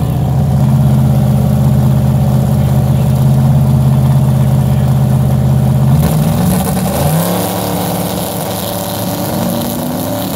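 Turbocharged drag-race engines running loudly at the starting line, a steady deep idle. About six seconds in the note changes: an engine revs up, rising in pitch, and then holds at a higher steady tone.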